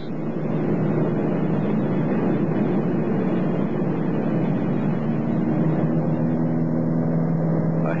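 Light airplane heard from inside the cockpit as it slows toward a stall: steady engine noise under rushing wind noise. The wind hiss thins out while the engine's steady hum stands out more clearly from about five seconds in. The changing engine sound and dying wind noise are the cues of an approaching stall.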